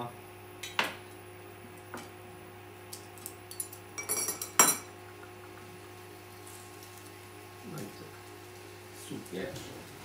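Kitchen utensils clattering: scattered clicks and knocks of a knife, cutlery and dishes, with a brief ringing clink and the loudest knock about halfway through.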